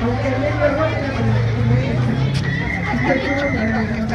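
Indistinct voices of people talking nearby, with the general chatter of a crowded indoor market stall.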